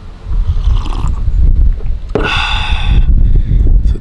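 Wind buffeting the microphone outdoors, a loud ragged low rumble, with a short hiss about two seconds in.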